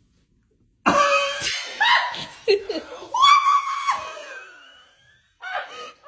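After about a second of near silence, loud screams and shrieking laughter break out in several outbursts, including one long high-pitched shriek, then trail off. Another burst starts near the end.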